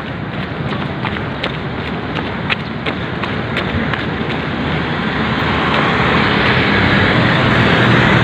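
A jogger's footfalls on concrete pavement, about two and a half steps a second, over a rushing street noise of wind and traffic that grows steadily louder toward the end.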